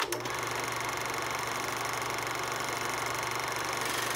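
Film projector running: a steady, fast mechanical clatter over hiss.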